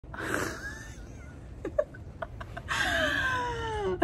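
A woman's wordless vocal reaction: a breathy sound near the start, a few faint clicks, then from about two-thirds of the way in a long whine that falls steadily in pitch.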